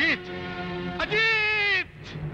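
Film background score with a steady drone. About a second in, a loud, wailing, reedy note enters, held for most of a second, and sags in pitch as it breaks off.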